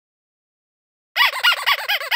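Intro jingle sound effect: a fast run of high, bird-like chirps, each rising and falling in pitch, about seven a second, starting about a second in.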